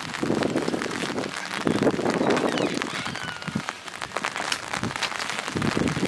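Steady rain falling, a dense haze of sound peppered with many small drop ticks.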